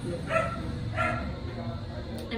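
A dog barking twice, two short barks about two-thirds of a second apart.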